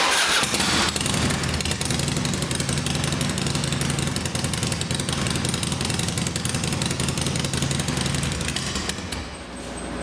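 2003 Harley-Davidson Dyna's Twin Cam 88 V-twin starting at once and settling into a steady idle, run for a short while to push fresh oil through the system after an oil change. The engine fades out near the end.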